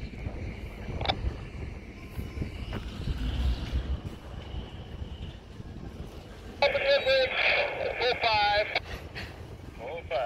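Uneven low rumble of wind on the microphone, with a faint hiss and a single click about a second in. A voice talks for about two seconds past the middle.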